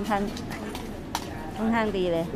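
People talking in the open, briefly at first and again near the end, with quieter chatter between. Two short sharp clicks fall in the middle.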